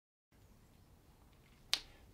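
Faint room tone, then a single short, sharp mouth click near the end, as a man's lips part just before he speaks.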